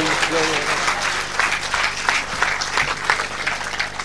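Audience applauding a just-recited verse: many hands clapping steadily, with a man's voice trailing off in the first moment.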